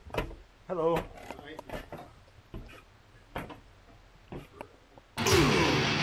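Footsteps knocking on wooden stairs and floorboards, irregular and sharp, with a brief voice about a second in. A little after five seconds, loud rock music cuts in abruptly.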